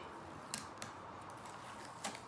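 Faint clicks of an adhesive stencil being picked and peeled off a painted wooden tray with a pointed weeding tool, two sharper ticks about half a second and just under a second in, over low room hiss.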